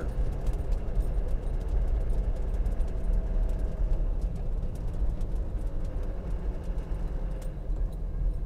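Land Rover Defender 90's diesel engine and tyres at a steady cruise on a paved road: an even, low rumble with road noise.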